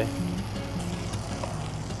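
Soft background music with a steady low hum and short held bass notes, over faint sizzling of tomatoes frying in a pan.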